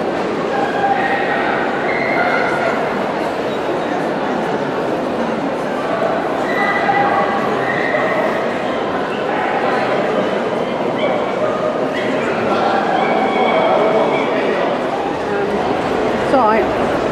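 Many dogs barking and yipping together, with short overlapping calls scattered throughout over a steady background of people talking.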